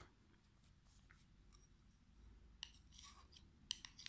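Near silence with a few faint clicks of knitting needles being handled, about two and a half seconds in and again near the end.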